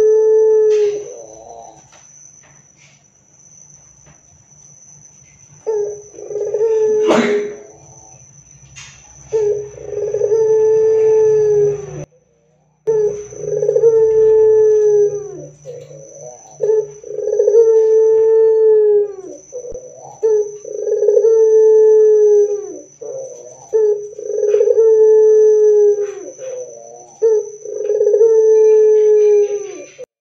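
Ringneck dove (puter) cooing loudly over and over: about eight long drawn-out coos, each ending in a falling note, with short pauses between them. A single sharp click sounds about seven seconds in, and a faint steady high whine runs behind the calls.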